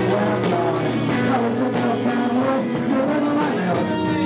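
Live rock band playing electric guitars and drums at a steady loud level.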